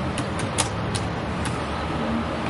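Computer keyboard keys being typed: about five short clicks at uneven intervals, over a steady background hum.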